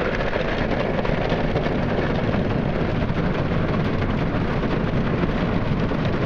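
Soft-cloth wash brushes of a Ryko Softgloss XS automatic car wash scrubbing against the side of a pickup truck, heard from inside the cab: a loud, steady rush full of rapid flapping slaps.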